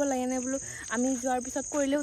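Crickets trilling in a steady high-pitched run that breaks off briefly every half second or so, under a woman's loud, drawn-out exclamations.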